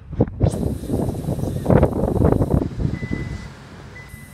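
Wind buffeting the microphone with handling noise, then two steady high beeps about half a second each, starting about three seconds in, from the 2018 Kia Stinger GT's power liftgate alert as the hatch begins to close.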